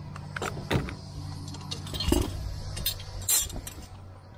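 A roll of TopShield SG-30 synthetic roofing underlayment is handled and unrolled over the plywood roof deck: plastic rustling and crinkling with scattered sharp crackles, the sharpest near the end. A steady low hum runs underneath.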